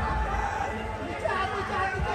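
Music breaks off right at the start, leaving indistinct chatter of several voices in a large hall.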